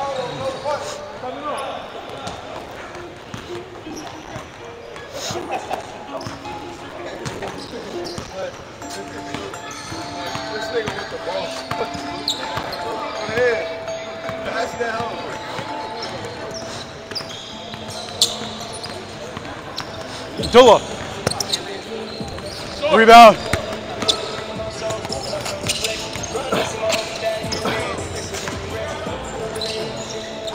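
Basketballs bouncing on a hardwood gym floor during a pickup game, with short knocks throughout and sneakers squeaking sharply on the court twice, about two-thirds of the way through, the loudest sounds.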